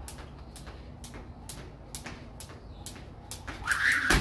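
A jump rope slapping a concrete floor in a steady rhythm, about two sharp slaps a second, as someone skips. A louder, rougher burst comes near the end as the jumping speeds up for a triple-under attempt.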